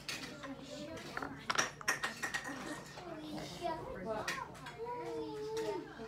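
Indistinct, wordless voice sounds, most of them in the second half, with a few sharp clicks and clatters of small objects about a second and a half to two seconds in.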